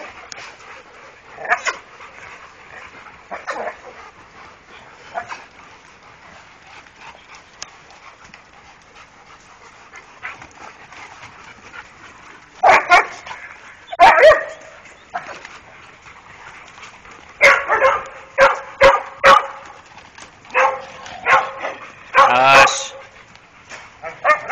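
Dogs barking. There are a few faint barks in the first half, then a run of loud barks from about halfway, ending in a longer, wavering bark near the end.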